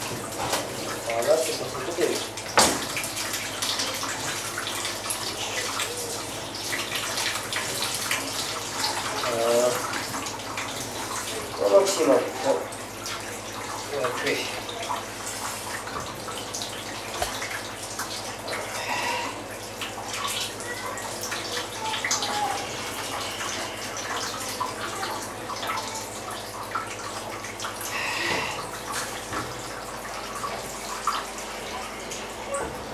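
Whey trickling and splashing as fresh sheep's-milk curd is squeezed by hand into plastic cheese moulds, with occasional sharp knocks of hands and moulds on the table.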